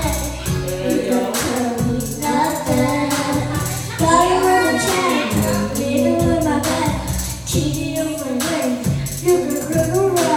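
Karaoke pop backing track with a steady beat, with singing over it through microphones.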